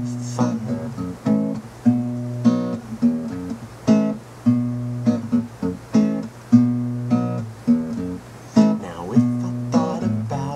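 Acoustic guitar strummed in a steady rhythm, about two chord strokes a second, each chord ringing on between strokes.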